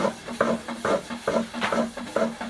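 Rhythmic wooden knocking and scraping from hand-made yufka flatbread being worked with a thin wooden stick, about four strokes a second, not quite regular.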